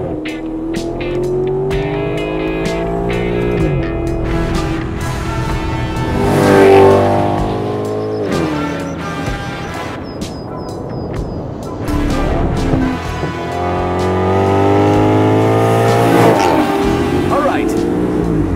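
2008 Maserati GranTurismo's cross-plane-crank F136 V8 accelerating hard through the gears. The engine note rises in pitch over several pulls and drops back at each upshift, loudest a little after the middle.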